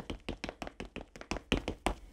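Quick, light footsteps of a child running down a wooden staircase, a fast even patter of steps.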